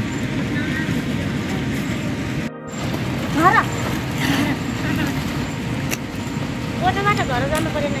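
Steady rain with a short gap about two and a half seconds in. A person's voice is heard briefly in the middle and again near the end.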